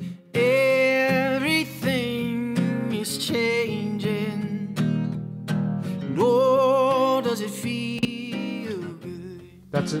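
Playback of a live-recorded man singing over an acoustic guitar, with the vocal running through a UAD Distressor compressor that is switched on. The singer holds long notes near the start and again about six seconds in.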